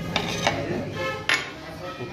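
A few knocks and clinks of dishes being handled on a table, with the loudest sharp knock just over a second in.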